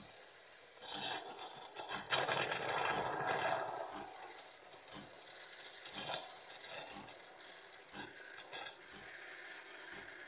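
Milk being steamed in a stainless steel jug on a coffee machine: a loud hissing, rattling burst for a few seconds, then a faint steady hiss with a sharp click about once a second.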